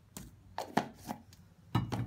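Metal fork and spoon knocking and scraping against a ceramic bowl as solid coconut oil is scooped in: a few sharp clicks, then a heavier thud near the end as a plastic jar is set down on the tray.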